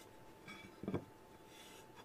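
Faint rubbing of a damp sponge over a textured clay plate, wiping back underglaze along its edge, with a brief soft sound about a second in.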